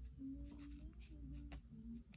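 Faint scratching and light taps of a paintbrush working on watercolour paper, over a low steady hum.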